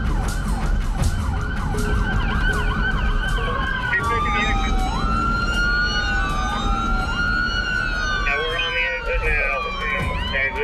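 Police sirens during a pursuit, heard from inside a patrol car. A fast, rapidly repeating yelp runs for the first few seconds, then several sirens wail more slowly and overlap, all over the car's engine and road noise.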